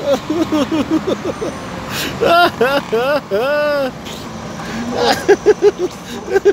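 A man's wordless cries and moans, long wavering rises and falls, as the heat of a big dab of wasabi hits him. Near the end it breaks into laughter, over passing city traffic.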